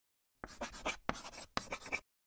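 Chalk writing on a chalkboard: three quick scratchy strokes, each about half a second long, that stop abruptly.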